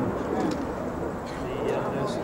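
Murmur of an outdoor crowd, many voices overlapping with no single clear talker, with birds calling briefly over it.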